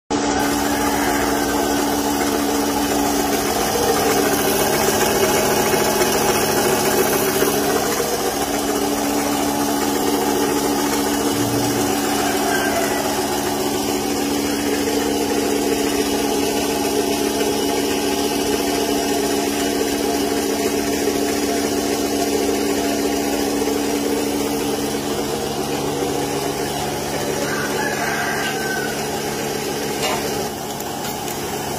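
Milking machine's engine-driven vacuum pump running steadily, a constant even hum with no change in speed.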